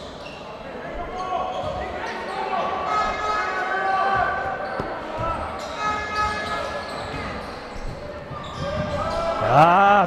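Basketball game ambience in an indoor arena: a crowd of overlapping voices calling and chanting, with the ball bouncing on the court.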